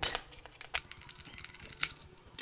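Small screwdriver working a screw loose from the charging board mount: a few faint ticks and clicks, with one sharper click near the end.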